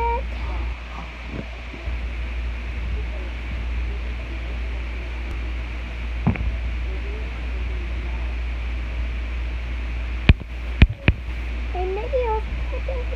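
Steady low hum with faint indistinct voice, broken by one sharp knock about six seconds in and three sharp knocks close together near the end: the phone being handled and bumped while a plush toy is held up to it.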